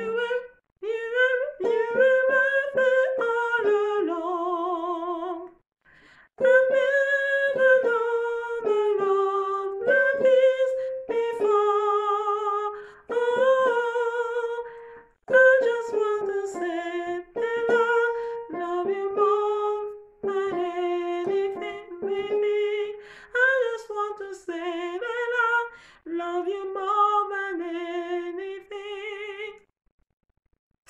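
A woman singing the soprano harmony line of a gospel worship chorus alone and unaccompanied, in sustained phrases with vibrato and short breaks between the lines.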